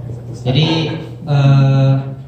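A man speaking Indonesian into a handheld microphone: a short burst of words, then a long drawn-out hesitation 'e…' held on one steady pitch for most of the last second.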